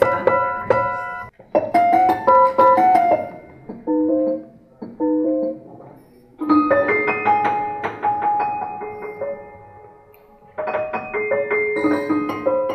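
Prepared piano, its strings fitted with bolts, screws and rubber, played in short phrases of struck notes with brief pauses between them.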